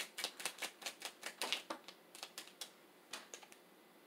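A tarot deck shuffled by hand, a quick run of crisp papery clicks about five or six a second that stops about two and a half seconds in, followed by one more tap.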